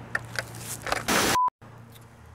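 Faint outdoor rustle and a few clicks over a low hum, then about a second in a loud burst of hiss. The hiss is cut off by a brief high beep and a moment of dead silence, a splice where one piece of camcorder footage ends and the next begins.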